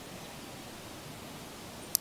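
Low, steady background hiss in a pause between spoken words, with one brief click near the end just before the voice resumes.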